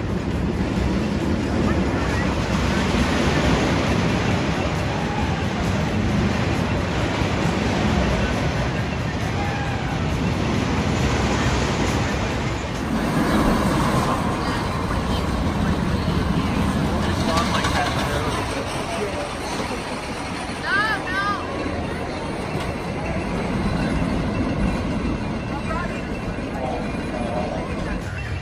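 Arrow Dynamics steel looping roller coaster trains running over the track, a rumbling roar that swells and fades several times as the trains pass, with people's voices mixed in.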